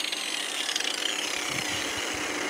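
Small angle grinder set to low speed, running with a steady whirr whose pitch slowly drops, powered from a converted UPS pure-sine inverter that is also carrying an inductive fan, a TV and a light bulb.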